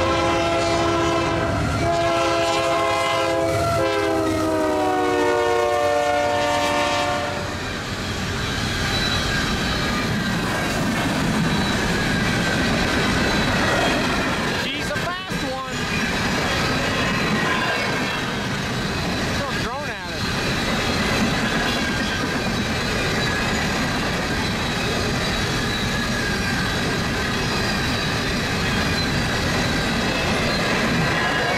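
Union Pacific diesel locomotive's air horn sounding at a grade crossing, its chord sliding down in pitch as the engine passes and stopping about seven seconds in. Then a fast-moving train of empty coal hopper cars rolls by with a steady rumble and wheel clatter.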